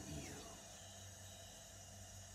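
Quiet room tone: a steady low hum under faint hiss, with a brief soft sound right at the start.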